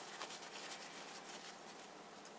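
Faint rubbing and rustling of a cloth wiping a fountain pen nib, a little louder in the first second and a half and then fading.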